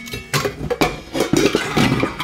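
Stainless steel canisters and lids clanking as they are pulled apart and set down, several sharp metallic knocks, each followed by ringing.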